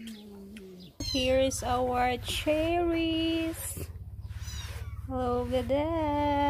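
A woman's voice making drawn-out, sliding 'mmm' sounds through closed lips, long pitched notes up to a second each. From about a second in there is a steady low hum underneath.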